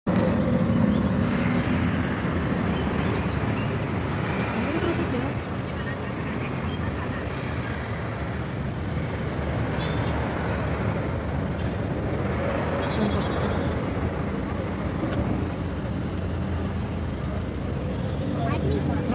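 Car cabin noise while driving slowly: a steady low engine and road rumble heard from inside the car.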